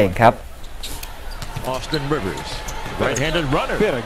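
Live basketball game sound: arena crowd noise with a ball bouncing on the hardwood court. A man's voice comes in over it from about two seconds in.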